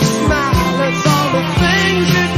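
1970s blues-rock band recording playing, with a steady drum beat under bass and sliding, bending melody lines.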